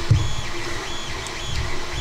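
A small motor whining in short repeated spurts, each rising in pitch, holding, then dropping, about every half second, over a low rumble and a few knocks from the camera being moved.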